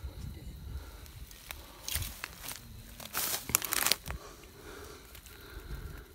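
Dry grass and leaf litter rustling and crackling as a hand and snake hook push into it, in two short bursts about two seconds in and from about three to four seconds in, the second louder.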